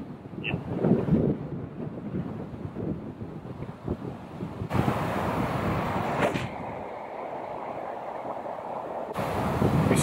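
Wind buffeting the microphone throughout, with a single sharp click about six seconds in: an iron striking a golf ball off the tee.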